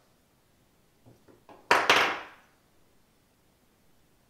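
Two sharp clacks of a hard object, about a quarter second apart, a little under two seconds in, each with a short ringing tail.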